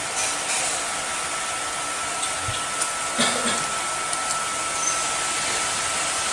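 Steady hiss of background noise with a faint, thin, steady tone running through it and a few faint ticks.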